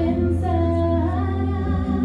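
Women's vocal trio singing in harmony through microphones, holding long notes that step up in pitch about a second in.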